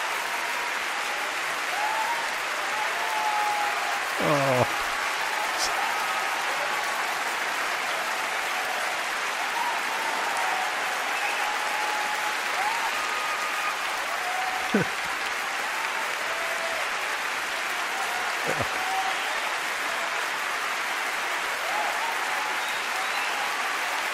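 Concert audience applauding steadily, with a few brief voices rising over the clapping.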